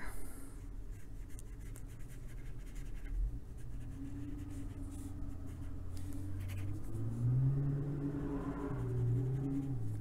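A truck engine driving by: a low drone that builds from about three and a half seconds in and rises in pitch about seven seconds in. A soft scratch of a brush on paper runs underneath.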